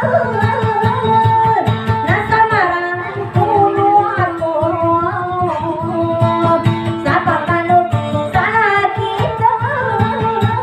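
Maguindanaon dayunday song: a woman singing in long held notes that bend and waver in ornamented glides, over a strummed acoustic guitar.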